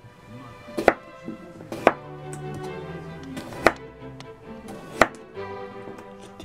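Kitchen knife slicing new potatoes on a plastic cutting board: four sharp chops, unevenly spaced, about a second or two apart.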